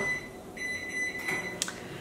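A single electronic beep: one steady high tone held for about a second, followed by a short click.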